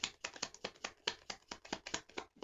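Tarot cards shuffled by hand, a rapid run of light card clicks at about eight a second.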